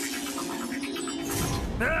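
Cartoon soundtrack music with a magic spell sound effect: a set of steady held tones stepping downward under a high, hissing shimmer, with a short burst of noise about one and a half seconds in. A laugh starts right at the end.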